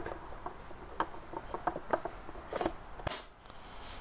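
Light, scattered wooden clicks and taps as a thin wooden divider is slid into the slots of a small wooden box, a few separate knocks spread across the moment.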